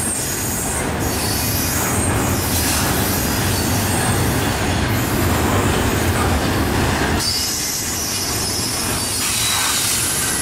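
Double-stack intermodal well cars rolling past close by: a steady, loud rumble and rattle of steel wheels on the rails, a little louder in the first part and easing slightly about two thirds of the way through.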